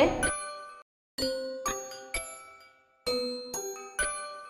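Bright bell-like chime jingle, a sound-effect cue: a run of struck ringing notes, each fading away, in three short groups with brief silences between them.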